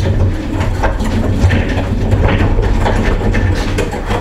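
Chest freezer rolling on small trolley wheels across a concrete floor: a steady low rumble with scattered knocks and rattles, easing off near the end as it stops at the doorway.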